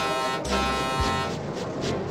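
Diesel locomotive horn sounding twice, a short blast and then a longer one, over background music.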